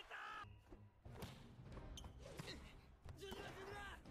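Faint soundtrack of an animated volleyball match: a ball struck a couple of times, about a second and two and a half seconds in, with short bits of dialogue.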